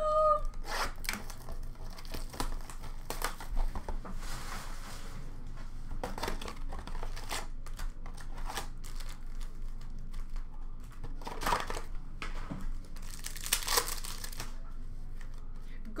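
A hockey-card blaster box and its card-pack wrappers being torn open and crinkled by hand, with cards handled in between. Irregular crackles run throughout, with two longer ripping noises, one about four seconds in and one near the end.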